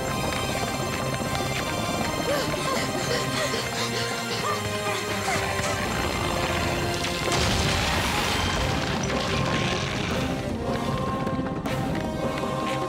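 Cartoon soundtrack music with crashing impact sound effects. A noisier crash-like stretch rises about seven seconds in and runs for several seconds.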